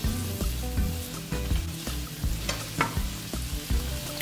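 Diced tomatoes sizzling in melted butter in a nonstick frying pan, stirred with a silicone spatula. A couple of sharper knocks of the spatula on the pan come about two and a half seconds in.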